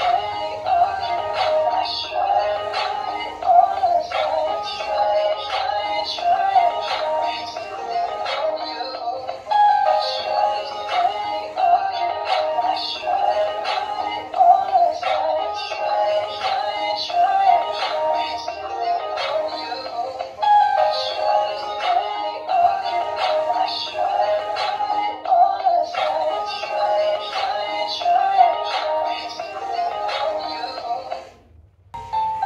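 Dancing cactus toy playing a song through its built-in speaker, a continuous melody with electronic-sounding vocals that starts right after a brief pause, its phrases repeating about every 11 seconds.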